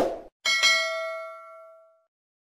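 Subscribe-button sound effect: a quick click, then about half a second in a single bright bell ding that rings out and fades away over about a second and a half.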